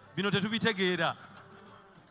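A man's voice through the reception PA: a short, buzzy spoken call lasting about a second, then a brief lull.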